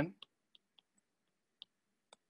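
A few faint, light clicks of a stylus tip tapping on a tablet's glass screen while handwriting, spaced irregularly over the first second and a half.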